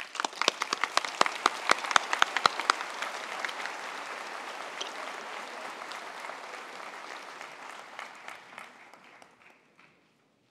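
Applause: loud, sharp claps close by in the first three seconds over a crowd's steady clapping, which fades away near the end.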